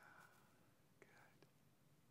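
Near silence in a room, with faint whispering twice: at the start and again about a second in.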